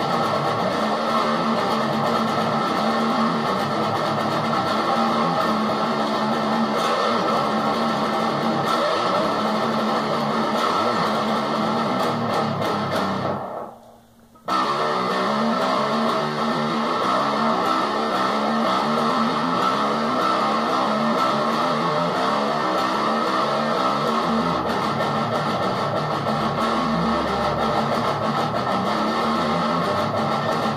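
Electric guitar playing a steady rhythmic metal riff; it stops for about a second a little before halfway, then picks up again.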